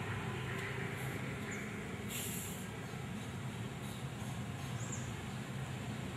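Steady background hum and hiss, with a short high hiss about two seconds in and a few faint high chirps near five seconds.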